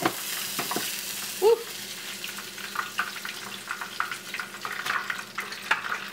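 Fish frying in hot oil in a skillet: a steady sizzle, a little stronger in the first second. Scattered light clicks of metal tongs handling the fried fish, and one brief louder sound about a second and a half in.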